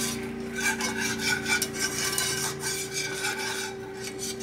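Wire whisk scraping round the bottom of a pan in quick, repeated strokes, stirring a thickening milk gravy.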